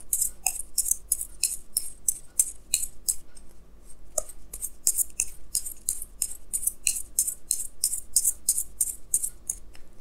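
A deck of tarot cards being shuffled by hand, each card flicking off the deck with a crisp snap, about three to four a second, with a short softer stretch in the middle.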